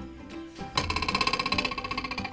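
Background music, then, under a second in, a loud rapid rattling buzz with about a dozen pulses a second that lasts about a second and a half. It is a comic sound effect.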